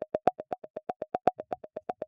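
Resonant filters in a VCV Rack software modular patch pinged by trigger pulses: a fast, even run of short pitched pings at one pitch, about eight a second, each with a small click at its start.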